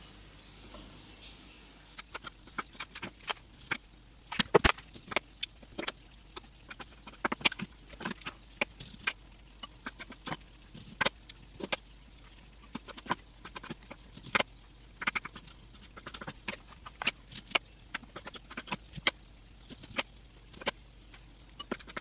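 Kitchen knife chopping plums on an end-grain wooden chopping board: irregular sharp knocks of the blade on the wood, a few a second.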